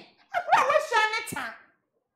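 Only speech: a woman talking excitedly in a high-pitched voice for about a second.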